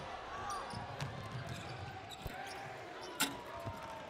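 Live college basketball in a gym: the ball bouncing on the hardwood floor, sneaker squeaks and crowd noise, with one sharp bang a little after three seconds in.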